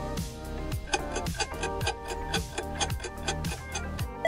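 Quiz countdown-timer music with a steady beat and clock-like ticking.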